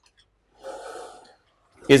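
A man's audible breath, a short gasp-like intake lasting just under a second about halfway through, followed near the end by a man's voice as speech resumes.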